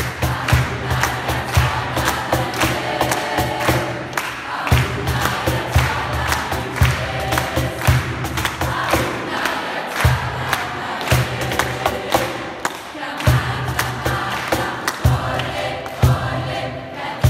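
Mixed children's and adult choir singing, accompanied by a cajón keeping a steady beat, with a low bass note sounding in stretches.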